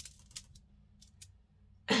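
A few faint, short clicks of beads and jewelry being handled as a beaded stretch bracelet is slipped onto a wrist, then a woman starts to laugh near the end.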